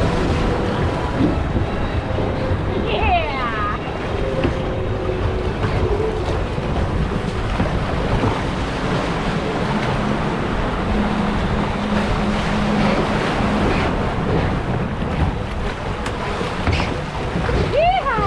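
Steady rush of water in a log flume ride's channel, heard from the boat as it floats along. Two brief falling high-pitched cries come through over it, one early and one near the end.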